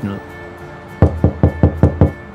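Knuckles knocking on a panelled door: a quick run of about five sharp knocks, roughly five a second, starting about a second in.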